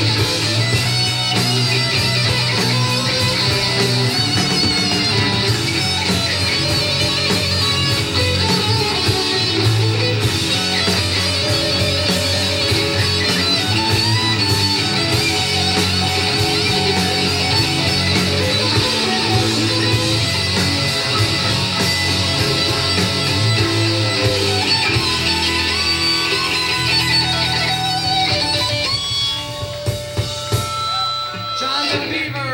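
Live punkabilly rock band playing an instrumental stretch: loud electric guitar from a semi-hollow-body guitar over bass and drums. Near the end the playing breaks off into a few held, ringing notes as the song finishes.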